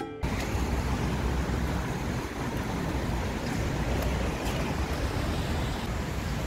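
Background music cuts off right at the start, leaving steady outdoor street noise: a rushing hiss with an uneven low rumble of wind on the microphone.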